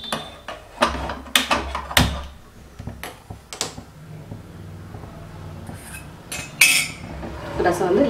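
Metal kitchen utensils and pans clinking and knocking: a series of separate sharp clinks, several in the first few seconds and two more near the end.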